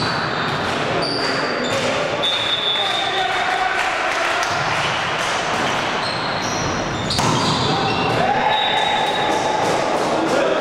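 Indoor volleyball rally on a sports-hall court: sharp hits of the ball, short squeaks of shoes on the floor, and players' voices and shouts in a reverberant hall. A louder hit and rising calls come about seven seconds in, as the point is won.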